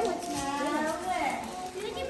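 Several children talking and calling out at once, an indistinct chatter of young voices.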